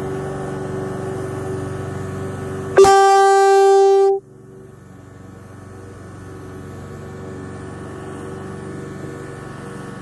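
Small compressor motor of a cordless airbrush humming steadily while it sprays. About three seconds in, a vehicle horn sounds one loud, held honk of about a second and a half that cuts off suddenly; the hum then comes back quieter.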